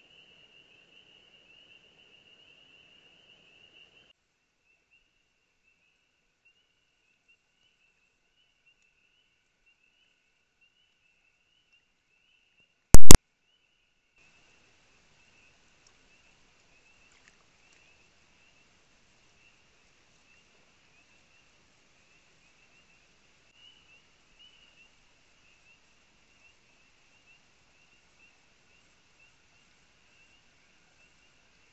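Faint, steady, high-pitched trilling of night insects at the pond. One loud, sharp click comes about 13 seconds in.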